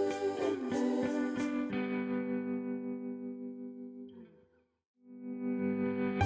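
Background music with guitar. A steady beat stops about two seconds in, leaving a held chord that fades to a brief silence near the five-second mark, then a chord swells back in.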